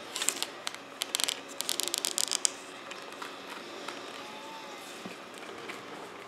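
A rapid run of small crackles and ticks for about two seconds from double-sided tape on a plastic styrene strip being peeled and pressed into place, then only faint room noise.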